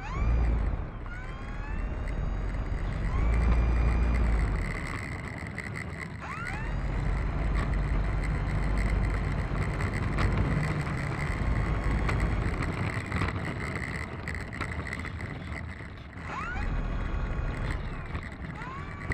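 The brushless electric motor and propeller of an E-flite Turbo Timber Evolution RC plane whirring as it taxis on the ground, the pitch sweeping up with short bursts of throttle a few times, over a low rumble.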